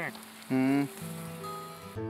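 Water spraying from a garden hose over plants: a steady hiss. A brief loud pitched sound comes about half a second in, and background music with steady held notes comes in at about one second.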